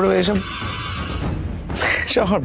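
A man's drawn-out, wavering vocal sound that ends about half a second in, over the background music of a TV drama. A short hissing swoosh comes near the end.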